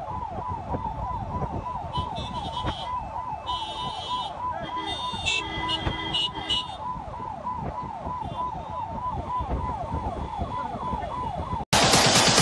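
A siren sounding in quick, even falling sweeps, several a second, over the rumble of slow traffic, with a few short car-horn honks in the middle. Just before the end it cuts off and louder music starts.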